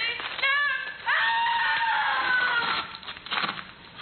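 A radio actress screaming as her character is attacked: short high cries, then one long high scream that slowly falls in pitch, followed by a few short knocks near the end.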